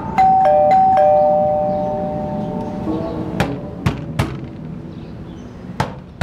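A two-note doorbell chime rings just after the start and fades slowly. Three knocks on a door follow a little past halfway.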